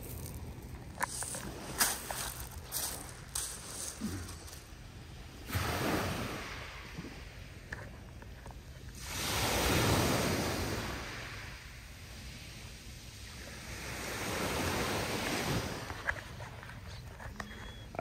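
Small sea waves breaking and washing up a pebble shore, rising and falling in slow surges every few seconds, loudest about ten seconds in. There are a few sharp clicks in the first few seconds.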